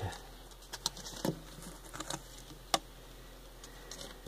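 Scattered light clicks and taps at a glass tank of hissing cockroaches, with one sharper tap near the end.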